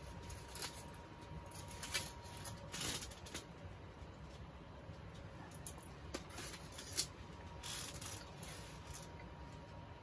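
Aluminium foil wrappers crinkling and rustling in short, scattered bursts as sandwiches are handled and eaten.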